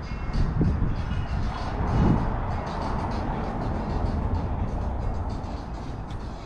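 Steady low traffic rumble of a city street, with music playing over it.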